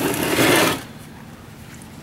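A golf cart charger's metal case scrapes across the workbench top as it is twisted round. It is one rough scrape lasting under a second, then only a low background remains.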